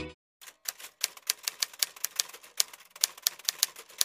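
Typewriter keys clacking in a quick, uneven run of strikes, several a second, starting about half a second in: a typing sound effect laid under a title card.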